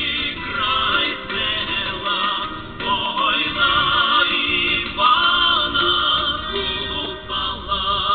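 A group of voices singing a Ukrainian folk song, with long held notes that waver in pitch.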